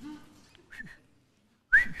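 A short, rising, high whistle near the end, with a fainter brief whistle about a second in.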